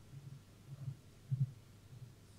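A faint low thumping pulse, a little under two beats a second, over a steady low hum.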